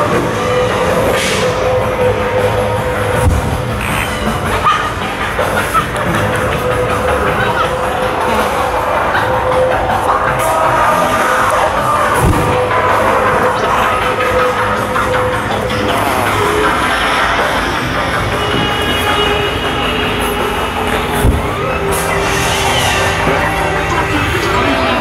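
Music with a long-held tone, mixed with faint voices and a few short thumps.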